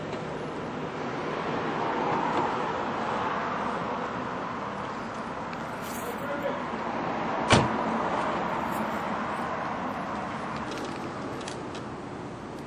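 A car pulling in with a steady engine and road noise, then a single sharp knock of a car door shutting about halfway through.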